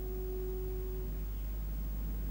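The last held piano chord dying away, gone about a second in. After it there is only a steady low mains hum and tape hiss.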